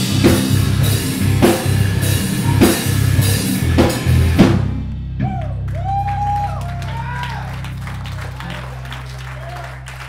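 Pop-punk band playing live with distorted guitars, bass and a drum kit, hitting heavy accented chords about once a second, then stopping abruptly about halfway through. A low note rings on from the amplifiers and fades while the crowd cheers and shouts.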